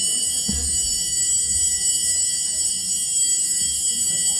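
A loud, steady, high-pitched electronic tone with several pitches sounding at once, holding unchanged without fading, like an alarm or sound-system noise interrupting the lecture.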